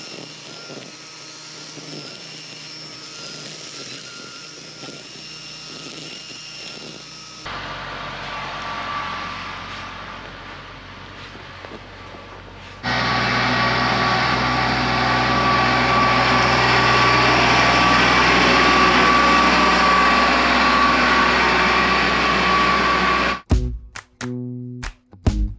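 Gas-powered string trimmer running steadily at high speed, heard in a string of clips with sudden cuts between them. The last ten seconds are much louder and cut off abruptly.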